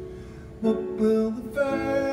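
A grand piano and a mandolin playing a slow song live, with soft held chords and then louder notes coming in a little over halfway through.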